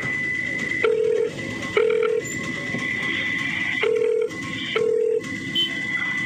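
Telephone ringing tone heard down the line while a call is placed: pairs of short low beeps about a second apart, the pairs repeating every three seconds or so, with a thin higher steady tone in between.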